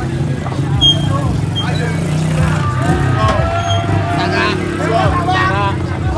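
Car and motorcycle engines running at low speed, with people's voices calling over them.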